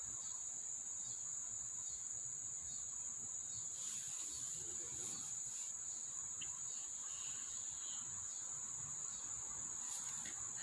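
Steady, high-pitched chorus of crickets, one continuous trill.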